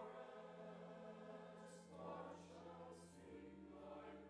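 A men's church choir singing softly, holding long sustained notes.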